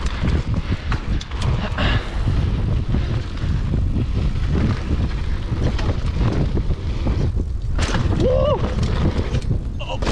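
Full-suspension mountain bike ridden fast down a dry dirt singletrack, heard from a bike- or body-mounted camera: continuous wind buffeting on the microphone with tyres rolling over sand and the bike rattling and clattering over bumps. A brief rising-and-falling pitched sound stands out about eight and a half seconds in.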